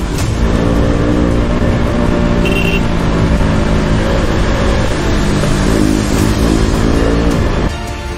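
KTM RC 200's single-cylinder engine running under way, its pitch rising and falling with the throttle, over wind noise. The engine sound cuts off suddenly near the end.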